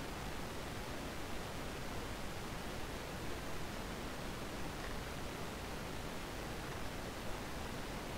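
Steady, even hiss of background noise with no distinct events.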